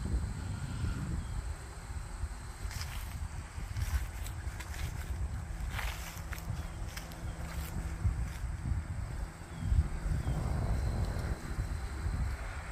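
Wind blowing over the microphone, a low steady rumble, with a few faint ticks and rustles from the breeze moving the flag and leaves.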